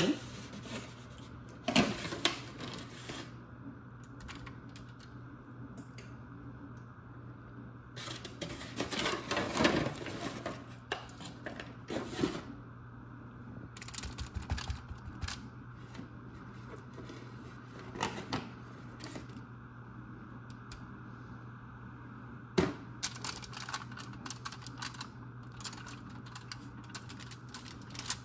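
Kitchen handling sounds in several bursts: aluminium foil crinkling and a metal spoon tapping and scraping as cherry pie filling is spooned onto crescent roll dough and the dough is rolled up. A steady low hum runs underneath.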